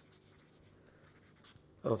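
Felt-tip marker writing on a sheet of paper: a run of short, faint scratching strokes as letters are written.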